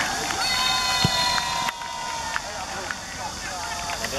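Several young voices shouting and yelling in long, high-pitched cries, with a single thump about a second in. The sound drops abruptly partway through, leaving quieter voices.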